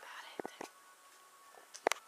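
A woman whispering close to the microphone, with a few sharp clicks; the loudest click comes near the end.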